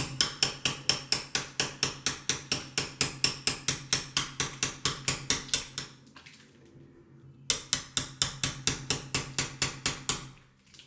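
Rapid hammer taps on a steel hacking out knife, about five a second, chipping old window putty out of a door's glazing rebate. The taps stop for about a second and a half after roughly six seconds, then start again at the same pace.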